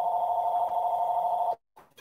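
A steady electronic beep made of two held pitches, sounding for about a second and a half and then cutting off suddenly, with the audio dropping out completely for a moment afterwards.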